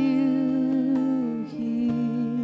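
Slow, soft worship music: a wordless hummed melody, wavering slightly in pitch, over held keyboard notes and acoustic guitar. The low held note steps down near the end.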